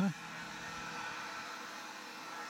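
Steady outdoor background hiss with no distinct events, a faint steady high tone running through it.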